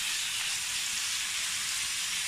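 Sliced pork stir-frying in hot oil with garlic and onion in a wok: a steady sizzle. It is being sautéed only briefly, so the meat stays pale rather than browning.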